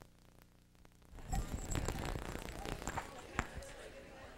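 Lecture-hall room noise that comes up suddenly about a second in: a murmur of voices with scattered knocks and clicks, the sharpest near the end.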